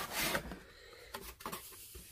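Cardboard packaging being handled and opened, a scraping, rubbing rustle of cardboard that is loudest in the first half-second, with a few small clicks and taps after it.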